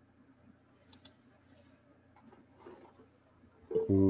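Mostly quiet room tone with two faint, short clicks close together about a second in. A man's voice starts near the end.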